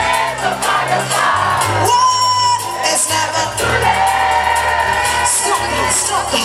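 Live soca band playing loudly: bass guitar and drums keeping a steady beat under singing, with long held notes about two and four seconds in.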